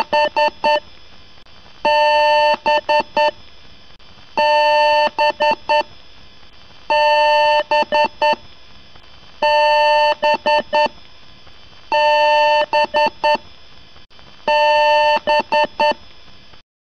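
Computer power-on beeps: one long beep followed by a quick run of short beeps, the pattern repeating about every two and a half seconds, in the manner of a BIOS beep code. Faint steady hiss between the beeps.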